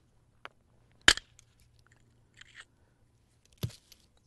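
Hard-hammer stone knapping: a hammerstone striking a river-cobble core with one sharp stone-on-stone crack about a second in, knocking off a razor-sharp flake. A second, weaker click comes near the end.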